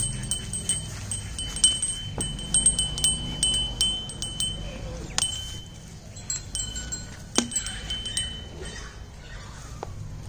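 Small metal bell or chime ringing and jangling over and over, with sharp clicks as it is shaken, busiest in the first half and sparser toward the end.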